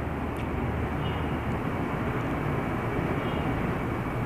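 Steady background noise: an even rumble and hiss with no distinct events.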